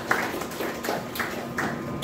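Hand clapping in an even run of sharp claps, about three a second.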